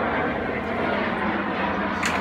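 Airplane flying over, a steady engine noise.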